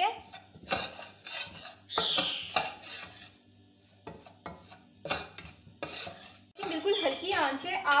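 Metal spoon scraping and stirring flour and butter in a metal saucepan, a run of quick scrapes against the pan, then a pause and a few more strokes. The flour is being fried in butter: the roux stage of a white sauce.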